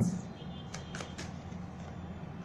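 Tarot cards being handled on a cloth-covered table: a few soft, short ticks in the first second or so, over a low steady background hum.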